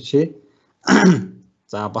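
A person clears their throat once, about a second in, between short bits of speech.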